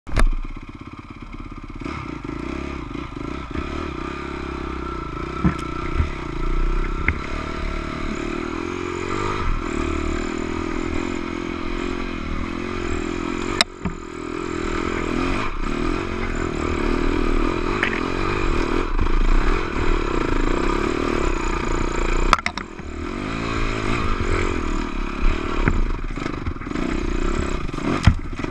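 Dirt bike engine running and changing pitch with the throttle as the bike is ridden over rough trail, with scattered clatters and knocks, one sharp knock about halfway through.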